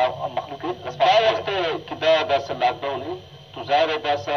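Speech only: a person talking steadily, with brief pauses between phrases.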